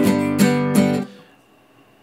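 Acoustic guitar strummed three times in quick succession in the key of G, the chord then ringing out and dying away to near quiet about halfway through.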